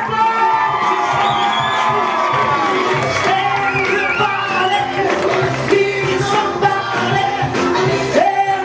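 Loud dance music with a steady beat, with a crowd cheering over it.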